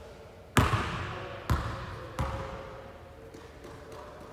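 A basketball bouncing on a gym floor three times, each bounce softer and sooner than the last, with echo from the hall: the ball dropping to the floor after a free throw.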